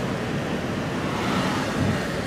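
Steady engine and road noise heard from inside a slowly moving car's cabin.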